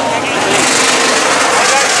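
Dirt-track modified race cars' V8 engines running together as the field circles at slow caution pace, heard from the grandstand with nearby spectators talking.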